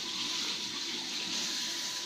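Steady, even rushing noise with a faint high tone running through it.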